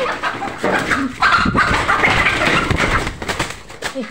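Chicken squawking and flapping in a loud scramble as it is chased and grabbed at.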